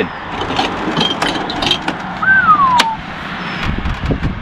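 A slide-out plywood kitchen drawer being unlatched and pulled out on metal runners: a few clicks and knocks over steady outdoor background noise, with a short falling whistle about halfway.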